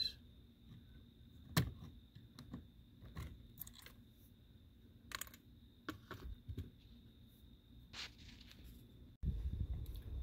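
Faint, scattered clicks and scrapes of metal needle-nose pliers gripping and working plastic blade fuses in a 2007 VW Jetta's fuse panel, over a faint steady high tone. About nine seconds in, the sound cuts to a louder low rumble of handling noise.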